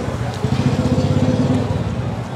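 A small vehicle engine running close by, a steady low throb that eases off near the end.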